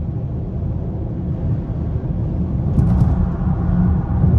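Steady low rumble of tyre, road and drivetrain noise inside the cabin of a 2023 Lincoln Aviator Black Label on 22-inch wheels, cruising at highway speed under light load. A couple of faint ticks come about three seconds in.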